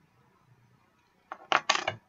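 Near silence, then a brief clatter of several sharp clicks in the last half second, like small hard objects knocking together.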